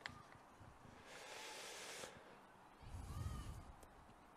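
Faint background ambience: a soft hiss lasting about a second, then a brief low rumble near the end.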